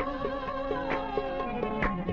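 Qawwali music: a harmonium holding steady chords with a hand-drum stroke about once a second.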